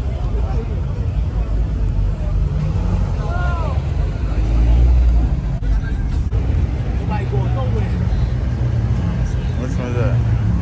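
Background chatter of people over a low car-engine rumble that swells about halfway through, with two sharp clicks shortly after.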